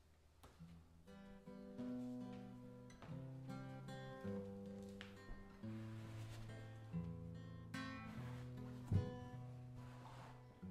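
Solo acoustic guitar played slowly, plucked notes and soft chords left to ring, coming in after about a second of near quiet. A sharp low thump near the end stands out as the loudest sound.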